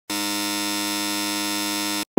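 Electronic buzzer-like sound effect: one steady, unchanging tone rich in overtones, held for about two seconds and then cut off suddenly.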